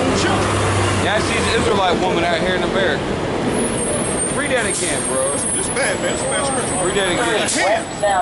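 A city transit bus passing on the street, its engine running and its brakes giving a high squeal about halfway through, under people's voices.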